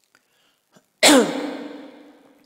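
A person sneezes once, loudly, about a second in, and the sound rings on and fades over about a second.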